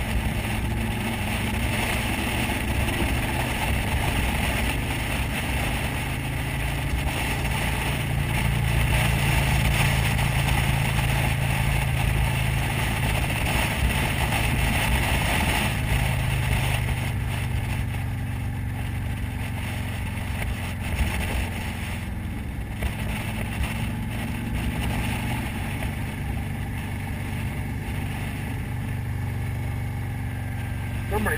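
Motorcycle engine running steadily at road speed, mixed with wind and road noise on the rider's camera. The engine note is strongest in the middle and eases off a little in the last third.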